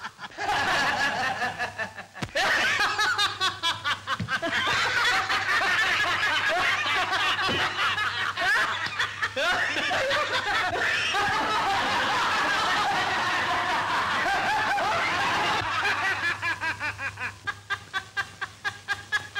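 A group of men laughing loudly together, several voices overlapping, with quick rhythmic bursts of laughter at the start and again near the end.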